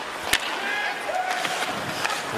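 Hockey arena sound during live play: a steady hubbub of crowd noise with one sharp click about a third of a second in, and a faint voice in the middle.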